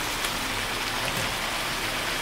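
Winged beans and pork belly sizzling steadily in a wok over high heat as the last of the braising liquid cooks off, stirred with a spatula.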